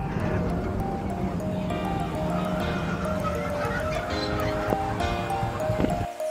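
Music with a simple steady melody, playing over a continuous low rumble.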